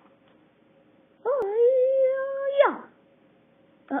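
A voice holding one long, sustained cry, about a second and a half long, that glides sharply up in pitch at its end.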